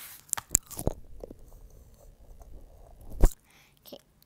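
A box of oil pastels being opened and handled: a few small clicks and crunchy rustling, then one sharp click a little after three seconds in.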